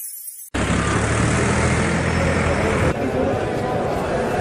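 The tail of a news-channel music sting fades out, then about half a second in there is an abrupt cut to outdoor audio: several men talking indistinctly over a steady low rumble, which eases off near three seconds.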